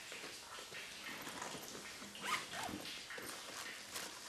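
Footsteps and the rustle of a handbag being picked up and opened, with a short high squeak about two seconds in.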